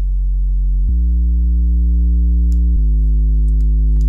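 Sine-wave sub bass from Xfer Serum's sub oscillator holding one deep note through Serum's tube distortion. As the drive knob is turned up, buzzing overtones build above the deep tone, stepping up about a second in and shifting again near three seconds.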